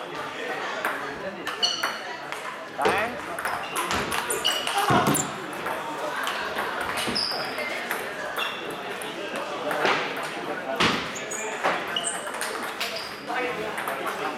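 Table tennis balls ticking off bats and tables in a busy hall, a quick irregular run of sharp clicks with a short high ring from rallies at several tables at once.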